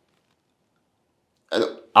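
Dead silence for about a second and a half, then a man's voice comes in with a short spoken syllable just before the talk resumes.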